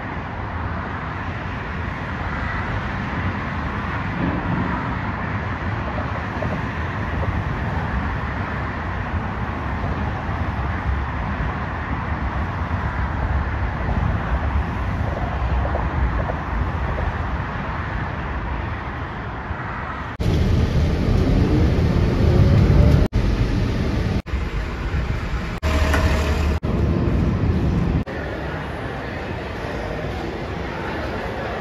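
Steady road traffic noise from passing motor vehicles. About twenty seconds in, a louder, heavier vehicle rumble starts, broken by several abrupt cuts, before dropping back to a quieter steady traffic sound near the end.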